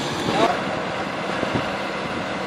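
Twin outboard motors of a rigid inflatable boat running as it motors away, heard as a steady even noise.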